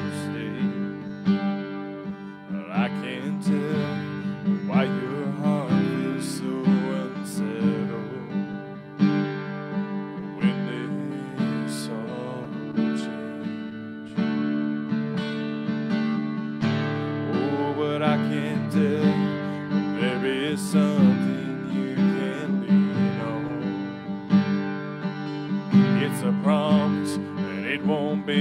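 Acoustic guitar strummed steadily, playing a worship song.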